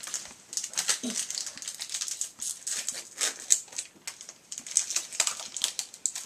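A foil Pokémon trading-card booster pack (BREAKpoint) being torn open by hand: irregular crinkling and ripping of the foil wrapper.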